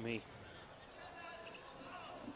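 A commentator's last word, then quiet arena background in a large hall with faint distant voices.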